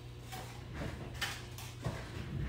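A few soft knocks and rustles of small objects being picked up and handled, over a steady low hum.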